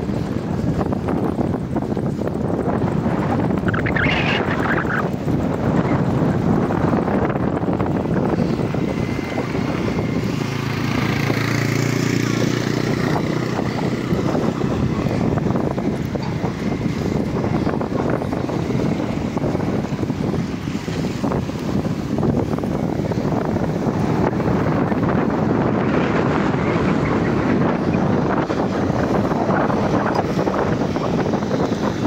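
Strong wind buffeting the microphone, a loud, steady rushing that covers everything else, with a low hum joining in briefly around the middle.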